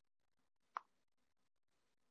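Near silence, with one faint short click a little under a second in.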